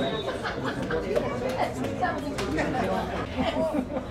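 Indistinct chatter of several voices talking at once, with a few sharp clicks or knocks mixed in.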